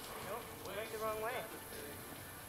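A faint, distant voice talking, with no clear sound of hooves.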